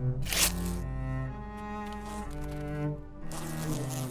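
A slow cello melody of held bowed notes, each changing pitch every half second to a second. About half a second in there is a brief scraping rasp, which fits paint being peeled from the wall.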